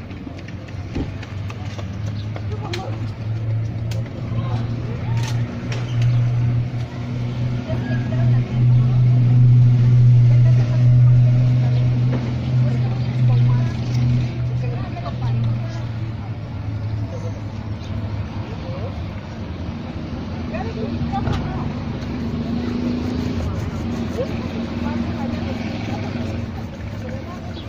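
A motor vehicle's engine running close by: a low drone that builds to its loudest about ten seconds in, then eases off and rises a little again near the end. Light rubbing and brushing on a leather shoe comes through underneath.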